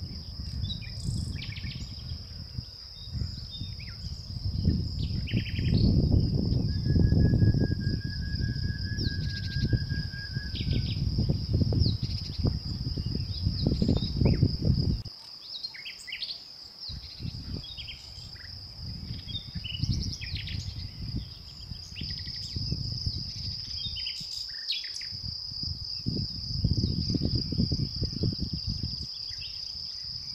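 Steady high-pitched chirring of crickets with scattered short bird chirps over it. A louder gusting low rumble of wind on the microphone comes and goes, dropping out briefly about halfway through.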